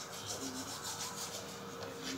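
Toothbrush scrubbing teeth in quick, repeated back-and-forth strokes, faint.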